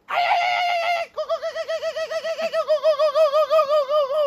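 A man's high, falsetto animal-like call, held on one note for about a second, then warbling quickly up and down, about six wobbles a second.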